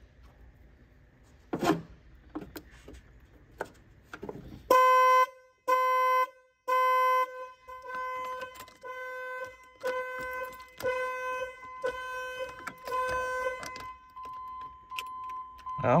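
Land Rover Discovery's security alarm going off when the new battery is connected. A few metallic clicks of a wrench on the battery terminal come first; then, a little under five seconds in, three long loud beeps, followed by shorter beeps about once a second, ending in a fainter steady tone.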